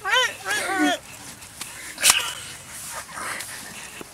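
High-pitched squealing laughter in short rising-and-falling bursts through the first second, then soft rustling with a single sharp knock about two seconds in.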